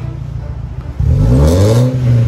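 Straight-piped Mercedes-Benz C63 AMG V8 exhaust idling, then blipped about a second in, its pitch climbing and falling back near the end; loud.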